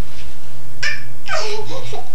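Toddler laughing during a peek-a-boo game: a short high-pitched giggle a little under a second in, then a longer peal of laughter.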